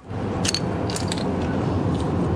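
Crumbly sea-sand mortar grating and crackling as it is rubbed apart in a hand, with a few sharp crackles about half a second and a second in, over a steady low rumble.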